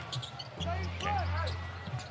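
Basketball game on a hardwood arena court: sneakers squeaking in short chirps and the ball bouncing, over a steady low hum.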